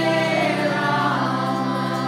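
A group chanting together in a kirtan, their voices held and sliding slowly over a steady low drone, with acoustic guitars and harmonium accompanying.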